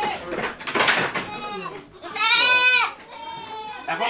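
Goat bleating: one loud, drawn-out bleat about two seconds in that rises and falls in pitch and lasts under a second, with a fainter bleat just before it.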